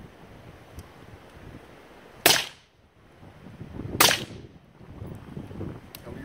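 Two shots from an AR-15-style semi-automatic rifle, about two seconds in and again under two seconds later, each a sharp crack with a short echo.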